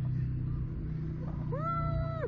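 A man's single drawn-out vocal cry near the end, rising, holding steady for about half a second, then falling, over a steady low rumble.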